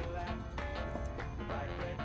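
Background music with a steady beat and a sustained melody.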